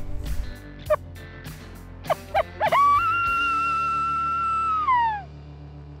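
A few short yips, then one long coyote howl held on one pitch for about two seconds and falling away at the end, the kind of sound used to call in coyotes, over steady background music.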